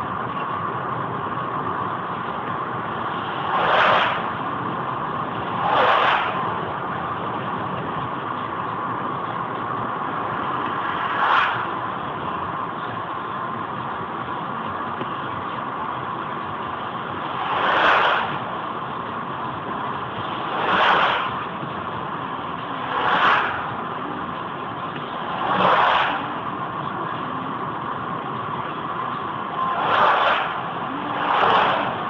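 Steady engine and tyre noise heard inside a car cruising on a wet highway. About seven times, a brief rising-and-falling whoosh comes as oncoming vehicles, including trucks, pass close by.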